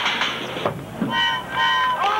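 High school marching band on the field: percussion hits, then two short held chords from the horns, like two horn blasts.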